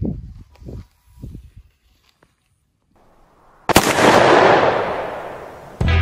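A single loud bang about two-thirds of the way in, its rumbling tail fading away over about two seconds: a blast sound effect laid over the film. A few soft low thumps come before it, and rock music with guitar cuts in just before the end.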